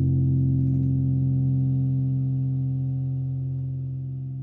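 Music: a held chord on distorted guitar and fuzz bass with effects, ringing on and slowly fading as the song ends.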